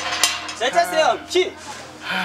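Clinking and rattling of a steel-barred gate being unlatched and pushed open. A man's voice calls out a name about a second in.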